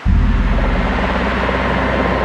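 Helicopter running, a loud low rotor-and-engine rumble with a fast throb that starts abruptly, joined about a second in by a steady high tone.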